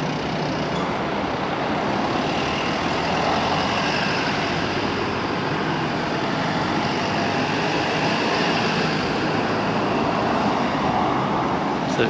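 Steady road-vehicle noise, an even rumble and hiss that swells slowly a couple of times.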